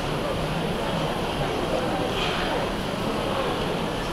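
Steady background chatter of many voices in a large, busy hall, with no single voice standing out.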